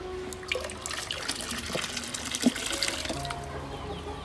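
Water splashing and trickling in a fish tank: a run of small, irregular splashes lasting about three seconds, then dying away.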